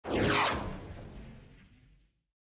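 A whoosh sound effect for a logo intro: a falling sweep with a low rumble under it, loudest about half a second in, then fading away over the next second and a half.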